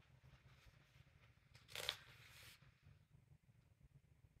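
Brief rustle of a coloring book's paper page being handled, about halfway through; otherwise near silence.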